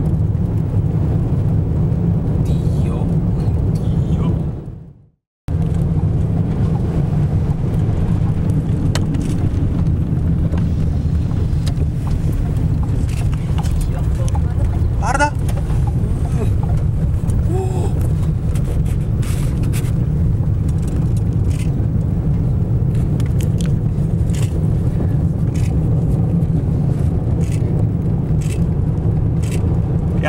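Steady low rumble of a vehicle driving on a dirt road, with road and wind noise heard from inside the cabin. The sound fades out and cuts back in about five seconds in.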